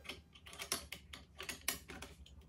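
Light metal clicks and taps of a 1961 Chinese SKS rifle's dust cover being fitted onto the receiver and pushed forward against the recoil spring. Several small, faint clicks, unevenly spaced.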